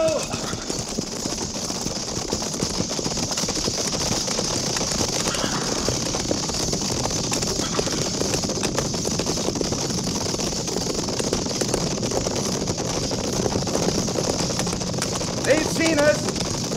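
Radio-drama sound effect of a cavalry company riding at the gallop: many horses' hooves beating in a steady, dense clatter with rattling tack.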